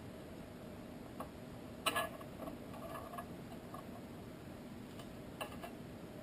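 Faint small clicks and scrapes of a plastic pry tool working under an iPhone 4S battery to free it from its adhesive. The loudest tick comes about two seconds in, with a few lighter ones scattered around it.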